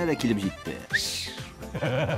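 Speech over background music, with a short hissing burst about a second in.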